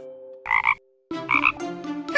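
Two short croak-like sound effects, the first about half a second in and the second about a second later, over children's cartoon music that drops out briefly between them.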